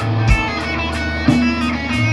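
Live rock band playing an instrumental passage with no singing: electric guitars and bass guitar over a steady drum beat, a hit about once a second.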